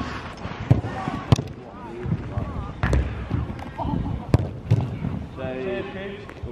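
A football being kicked, about five sharp thuds spread over a few seconds, with players' voices calling out between them.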